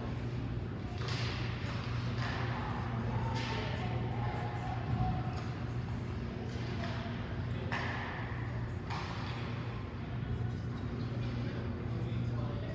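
Ice hockey play: skates scraping and carving the ice in several hissing strokes, a thud about five seconds in, and faint players' voices over a steady low hum of the rink.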